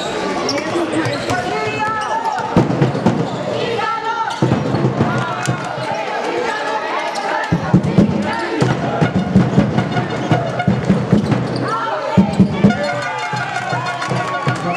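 A basketball being dribbled on a sports hall floor: a steady run of bounces, about two to three a second, from about halfway in, with players shouting.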